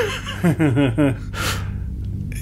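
A man laughing nervously: a quick run of short 'ha' bursts falling in pitch about half a second in, with a sharp breathy gasp at the start and another about a second and a half in.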